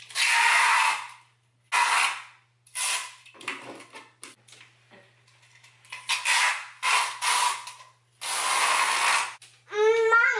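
Adhesive tape being pulled off the roll in a series of rasping strips, about eight pulls of half a second to a second each, with gaps between them.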